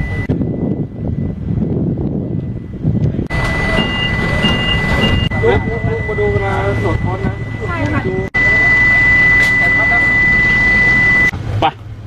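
Voices talking over a steady high-pitched electronic tone that starts about three seconds in, with three short higher beeps a second later. A low steady hum runs under the tone in the later part, and both stop shortly before the end.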